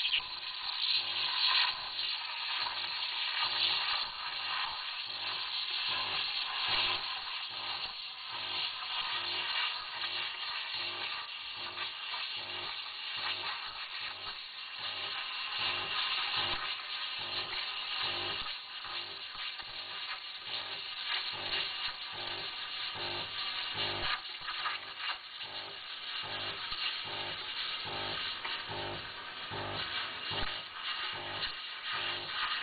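Sunbeam EM6910 espresso machine's steam wand hissing steadily as it stretches and textures milk, under background music with a steady beat.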